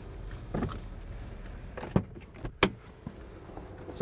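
Car door being unlatched and pushed open from inside: a few mechanical clicks and clunks, the two loudest a little over half a second apart about two seconds in.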